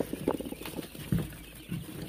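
Newly hatched quail chicks stirring in wood-shaving bedding as a hand reaches in among them: irregular soft scuffling and rustling with faint chick sounds.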